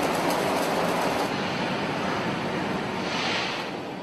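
A conveyor belt carrying broken rock or ore at an industrial plant, giving a steady dense rushing noise that fades near the end.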